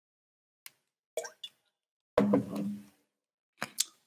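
A man drinking from a plastic water bottle: a small click, then wet swallowing plops just past a second in, followed by a short throaty vocal sound a little after two seconds. A few light clicks come near the end.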